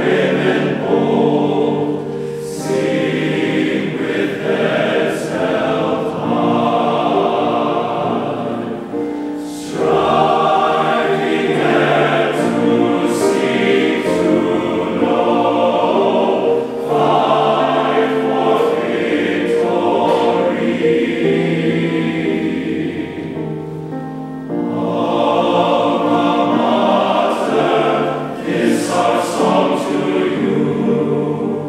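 A large all-male choir singing a fight-song medley in harmony, with short breaks between phrases about ten seconds in and again near twenty-four seconds.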